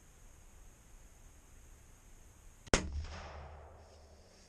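A single rifle shot, about two and a half seconds in: one sharp crack followed by an echo that dies away over about a second.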